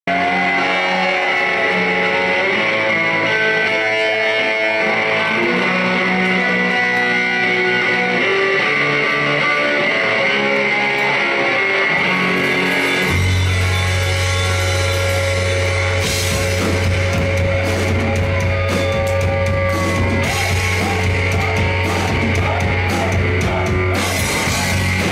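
Live rock band playing an instrumental opening: saxophone and electric guitars at first, a low bass line coming in about thirteen seconds in, and drums with cymbals joining about three seconds later.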